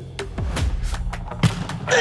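A football thudding as it is tossed and kicked on the volley, a few short thuds with the loudest about one and a half seconds in, over background music.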